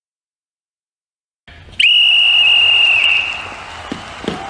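Silence, then about two seconds in a single loud, steady, high-pitched whistle blast held about a second before fading away.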